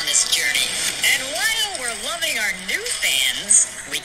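A TV clip's soundtrack: a voice talking over background music, played back from a phone.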